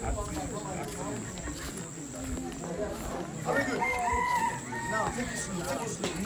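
A rooster crows once, a long call starting about three and a half seconds in, over the low chatter of voices.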